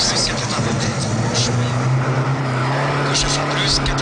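Renault 5 Turbo rally car's engine running steadily under way at a fairly constant pitch, with the co-driver's voice calling a pace note near the end.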